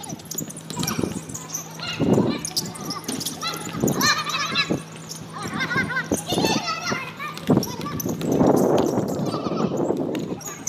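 Players' voices shouting and calling out during a basketball game, with a few short sharp knocks among them.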